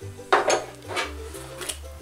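Small ceramic bowls and a glass salt jar being set down and picked up on a tabletop: a few light knocks and clinks, most of them in the first second.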